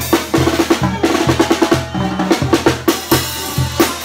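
Banda percussion: a metal-shelled tarola (snare) played in fast rolls and rimshots over the beat of a tambora bass drum, with a sousaphone playing a steady bass line of short low notes.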